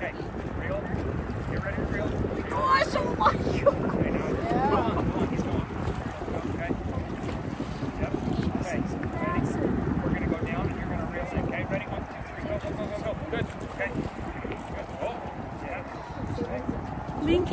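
Wind buffeting the microphone in a steady low rumble, with faint voices in the background.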